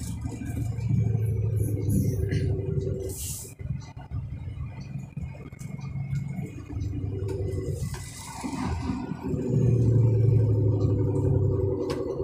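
A truck's diesel engine droning inside the cab. The drone rises and falls, dips briefly about four seconds in, and is loudest near the end.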